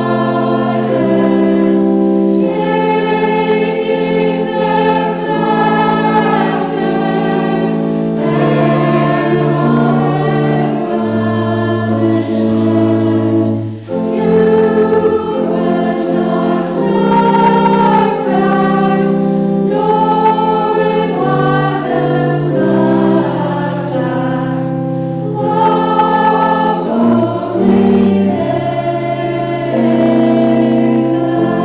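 Mixed church choir singing in parts, with a brief break between phrases about fourteen seconds in.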